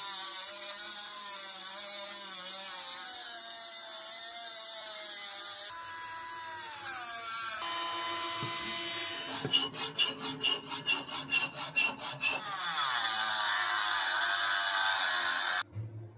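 Cordless rotary tool grinding and cutting the sprues off a cast aluminium toy car: a high whine whose pitch sags as the bit bites into the metal. Short clips are joined with sudden changes, one stretch holds quick, regular ticks, and the sound cuts off abruptly near the end.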